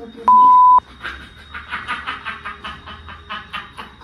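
A censor bleep: a loud pure 1 kHz tone lasting about half a second near the start, laid over speech in the edit. It is followed by a person's voice in short, rapid bursts that stop just before the end.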